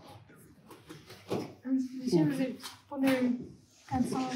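Speech: a person talks briefly from just over a second in, after a moment of low background noise.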